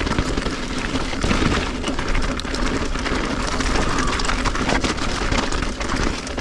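Mountain e-bike riding over a loose, rocky gravel trail: a steady crunch and crackle of tyres on stones, with many small clicks and rattles from the bike.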